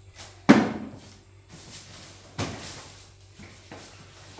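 Groceries being handled and set down on a wooden table: one sharp knock about half a second in, a softer thump near the middle, and a few light taps near the end.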